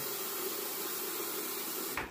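Hot water running steadily from a bathroom tap into the sink, cut off suddenly at the very end.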